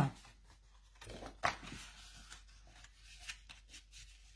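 Cardstock being handled and folded along a scored line: faint paper rustles and light taps, with one sharper tick about a second and a half in.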